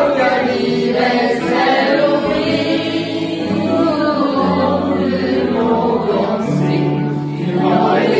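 A group of mixed voices singing together as an amateur choir, with long held notes.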